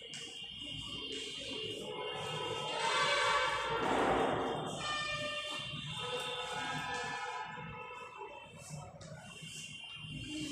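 Background music of held, sustained notes, with a brief hissing swell about three to four seconds in that is the loudest part.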